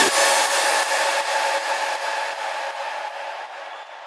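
The rawstyle track's closing stretch: the kick and bass drop out, leaving a hissing noise wash with faint held synth tones that fades away over about four seconds.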